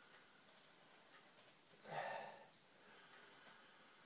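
Near silence broken by one soft breath about two seconds in, as a man smells the aroma of a glass of lager held to his nose.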